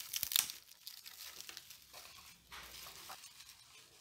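Plastic cling film crinkling as a hand peels it back from a baking dish, loudest in the first half-second, then fainter scattered crackles.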